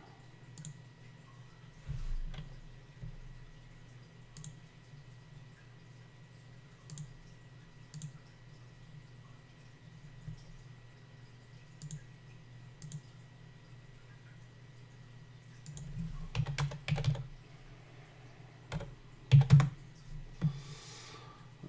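Computer mouse and keyboard clicks: scattered single clicks every second or two, then a short run of keystrokes about 16 seconds in and a louder pair of clicks near the end, over a steady low hum.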